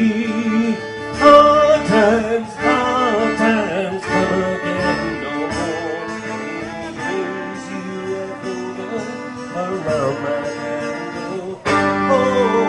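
Electric violin playing a fiddle melody with wavering, gliding notes over a looped guitar accompaniment.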